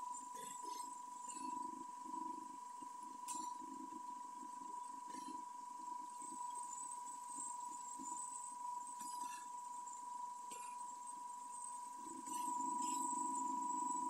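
Battery-powered motor and boost-converter rig running: a steady high-pitched electrical whine over a low hum, with a few faint clicks of test leads being handled. The hum gets louder near the end.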